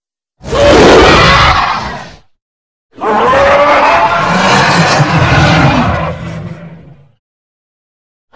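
Two recreated roars of a cartoon Godzilla: a short one about half a second in, then a longer one starting about three seconds in whose pitch glides and which fades out near the seventh second.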